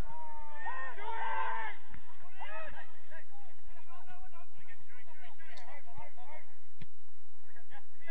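Footballers' voices shouting and calling to each other across the pitch during play, heard from a distance, with a couple of sharp knocks about five and a half and seven seconds in.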